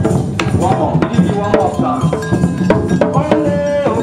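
Group hand drumming on djembes and a conga in a steady rhythm, with a melody running over the beat.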